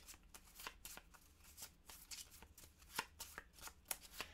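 Small game cards being shuffled by hand: a faint, irregular run of soft clicks and flicks.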